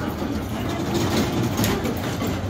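Mall kiddie ride train running past, a steady low noise with faint voices behind it.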